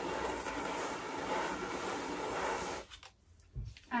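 Hot steam iron's soleplate rubbed in circular motions over table salt spread on newspaper, the salt working as an abrasive to scour off limescale: a steady scraping that stops suddenly about three seconds in as the iron is lifted.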